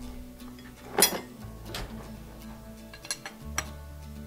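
Open-end wrench clinking against a metal fitting as the control piston fitting on a pressure washer pump is snugged down: one sharp click about a second in and a few lighter ones later, over soft background music.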